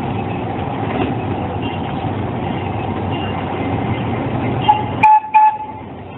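Miniature amusement-park train running with a steady rumble and rattle, then sounding two short toots about five seconds in.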